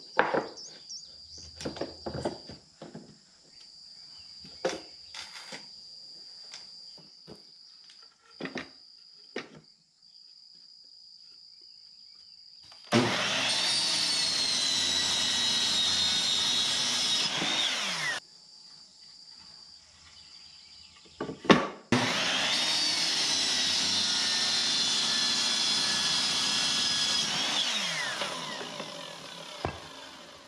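Ryobi miter saw making two cuts through wooden boards: each time it starts abruptly, runs loud and steady for about five seconds, then winds down with a falling whine. Before the cuts, boards are handled with light knocks and clatters.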